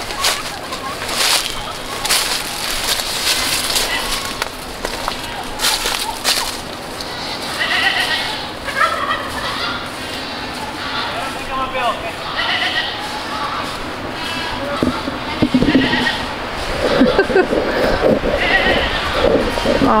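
Footsteps crunching through dry leaf litter and brush, then short animal calls repeated every second or two from about seven seconds in.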